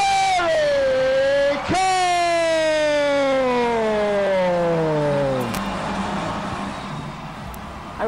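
A boxing ring announcer stretching out a boxer's name: a short held call, then one long call about four seconds long that slowly falls in pitch and fades away.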